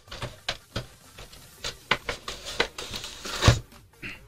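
Cardboard and clear plastic packaging of a trading-card collection box being handled and pulled out: a quick series of short rustles and clicks, the loudest about three and a half seconds in.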